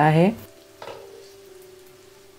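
Faint sizzling of an onion-tomato masala and farsan mix cooking in a pan, with a steady low hum underneath and one light tap about a second in.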